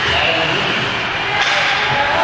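Ice hockey play in a rink: a sharp crack of stick on puck or puck on boards over steady rink and crowd noise.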